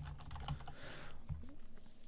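Computer keyboard typing: a handful of faint, irregular keystrokes as a short word is typed, over a low steady hum.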